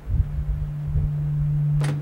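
Steady low electrical hum through the room's sound system, with low handling thumps on the microphone underneath and a sharp knock near the end.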